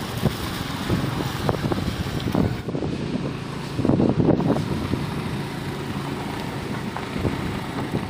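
Motor scooter engine running as it rides along, with wind noise on the microphone, briefly louder about halfway through.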